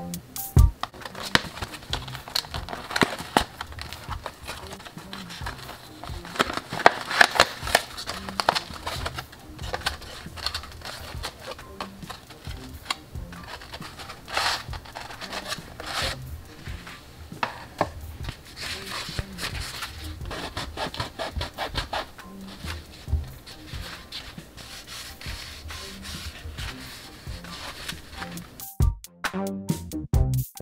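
Cardboard packaging being handled and opened and a sponge pulled out: irregular crinkling, rubbing and tapping, with music playing underneath.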